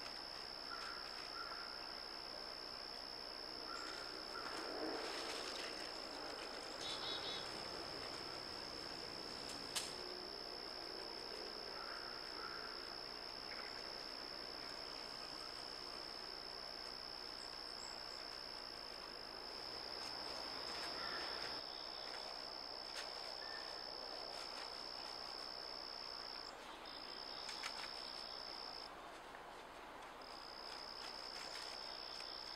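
A faint, steady, high-pitched insect trill, like a cricket's, that breaks off briefly twice near the end. Over it come a few faint rustles of dry leaves and one sharp click about ten seconds in.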